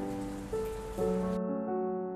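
Soft background music: slow, sustained keyboard notes come in about half a second and a second in, over a faint hiss that cuts off abruptly partway through.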